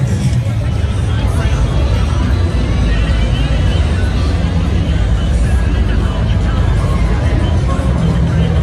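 Busy nightlife street ambience: crowd chatter and voices mixed with music from the bars and passing cars, with a heavy steady low rumble throughout.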